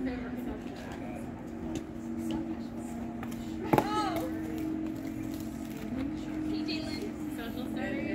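A single sharp hit of a thrown plastic flying disc striking about four seconds in, with a brief ringing after it, over low voices and a steady low hum.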